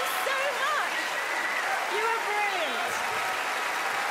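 Large theatre audience applauding steadily, with scattered voices cheering over the clapping.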